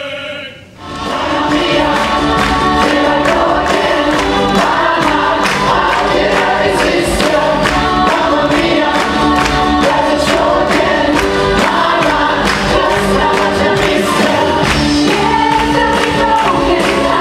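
A held sung note breaks off with a brief drop, and just under a second in an up-tempo stage-musical number starts: a large chorus singing together over a band with a steady beat.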